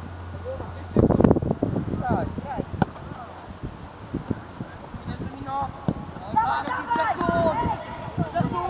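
Distant raised voices calling and shouting across a youth football pitch, in short high calls that come thickest near the end. A burst of low rumble comes about a second in, and a single sharp knock near three seconds.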